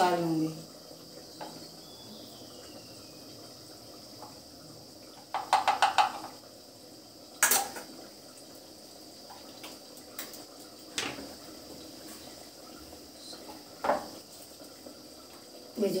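Metal kitchenware clinking and knocking: a quick ringing rattle of a steel ladle against an aluminium cooking pot about five seconds in, a sharp clink a little later, and a few single knocks, over a faint steady hiss.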